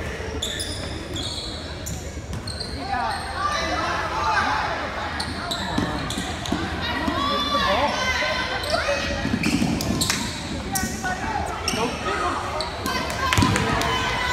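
Basketball game sounds echoing in a gym: a ball bouncing on the hardwood court, short sneaker squeaks in the first few seconds, and players and spectators calling out from about three seconds in, with no clear words.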